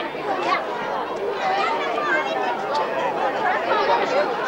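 Crowd chatter: many people talking at once, steady, with no single voice standing out.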